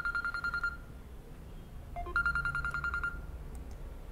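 Electronic ringing tone: a fast-trilling beep sounds twice, each burst about a second long, the second starting about two seconds after the first.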